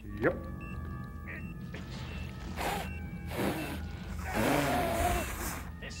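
Film soundtrack: background music with steady high tones, broken by several loud rushing noise bursts, the longest and loudest about four to five and a half seconds in.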